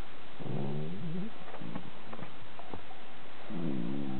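Italian greyhound grumbling in whiny, wavering 'unya-unya' moans, complaining at a rival dog it is trying to drive off. One moan comes about half a second in, a few short grunts follow, and a second, steadier moan starts near the end.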